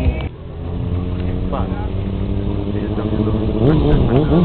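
Sportbike engine running at a steady pitch, the revs beginning to rise and waver near the end as the throttle is worked.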